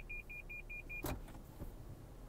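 Lexus Park Assist parking-sensor beeper giving quick, evenly spaced high beeps, about five a second, as the sensors detect an obstacle close behind the car in reverse. The beeping stops with a click about a second in.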